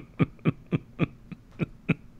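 A man laughing in short breathy pulses, about three or four a second.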